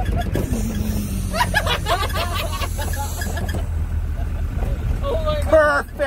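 Steady low rumble of a small truck driving along, heard from its open back tray, with people's voices calling out over it, loudest near the end.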